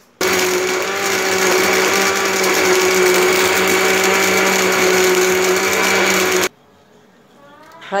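Electric blender running at one steady speed for about six seconds, grinding falsa berries with water, sugar and salt, then cutting off suddenly.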